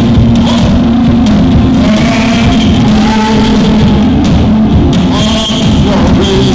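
Live gospel praise band music, loud and steady, with a wavering melody line over a steady low bass.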